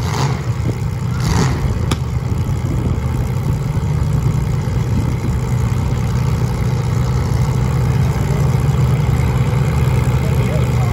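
Several compact demolition-derby cars' engines running and revving together in a steady, loud low rumble, with a single sharp knock about two seconds in.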